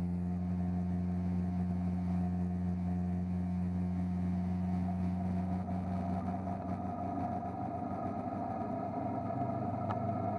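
Cruiser motorcycle's engine running steadily at cruising speed, a low, even engine note.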